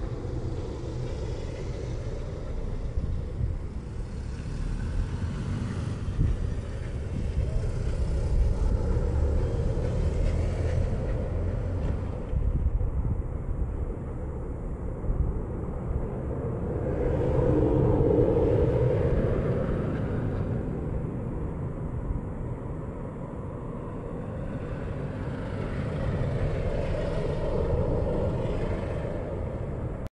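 Low outdoor rumble of road traffic, swelling about two-thirds of the way through as a vehicle passes.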